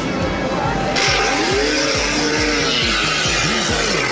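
A loud rushing hiss starts suddenly about a second in and lasts about two and a half seconds, over background music.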